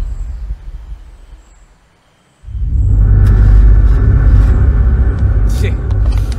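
A car engine running with a deep, steady rumble that comes in suddenly about two and a half seconds in, after an earlier low boom fades to near silence. A few sharp clicks sound over it.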